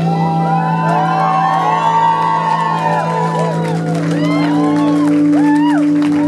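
A rockabilly band playing live, with electric guitar, upright bass and drums: low notes held steady under high notes that bend and glide up and down.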